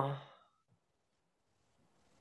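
A woman's drawn-out "oh", falling in pitch and trailing off within the first half second, then near silence: room tone.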